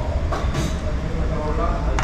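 Background voices of people talking over a steady low rumble.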